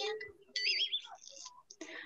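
Faint household background sound carried through a participant's open microphone on a video call: a television on and muffled voices, with a brief high, wavering sound about half a second in.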